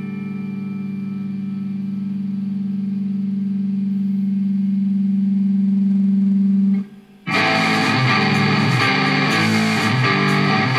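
A held electric guitar chord through effects swells steadily louder for about seven seconds, then cuts off. After a short gap the band crashes in: a distorted electric guitar riff over drums and cymbals.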